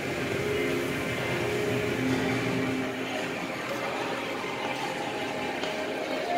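Hotel lobby ambience: a steady background hum with faint, scattered short tones and no clear words.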